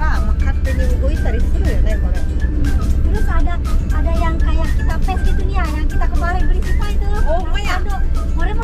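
Low, steady rumble of a car driving, heard from inside the cabin, with music and talking over it.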